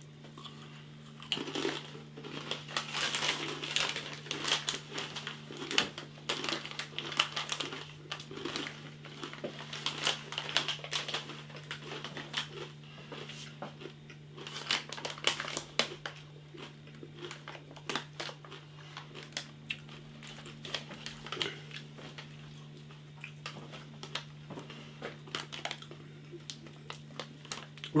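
Crunchy, rolled tortilla chips (Takis Fuego) being bitten and chewed close to the microphone, a string of irregular crisp crackles, with the foil crisp bag crinkling now and then. A steady faint low hum sits underneath.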